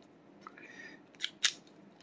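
A faint scrape, then two small sharp metallic clicks close together from a Sig Sauer P238 pistol's slide and slide release lever as the lever is worked against the takedown notch during reassembly. The lever is stuck and not seating.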